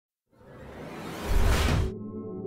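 A whoosh sound effect for an animated logo intro: a rushing swell that builds out of silence to a loud peak with a deep low rumble, then cuts off suddenly.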